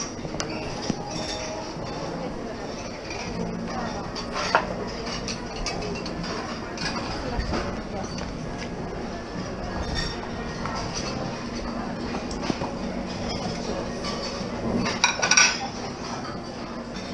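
Scattered clinks of crockery, glassware and cutlery at a busy breakfast buffet, over a steady murmur of voices, with a louder cluster of clinks near the end.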